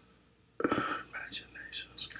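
A man's faint whispered speech, beginning about half a second in after a brief silence.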